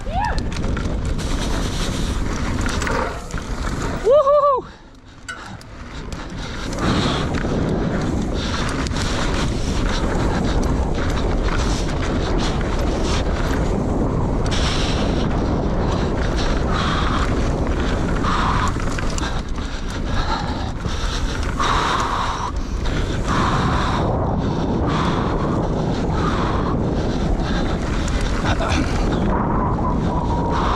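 Mountain bike riding fast down a dry dirt trail: wind buffeting the camera microphone, with tyre noise and the rattle of the bike over the ground. About four seconds in, a brief loud voice cuts through.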